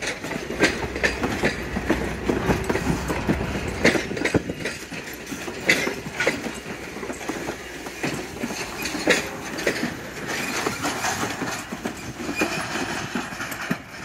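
Vintage passenger coaches rolling slowly past, their wheels clicking and knocking irregularly over the rail joints.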